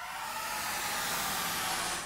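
Rushing, white-noise-like sound effect opening a hip-hop track, holding steady and then losing its top end right at the end.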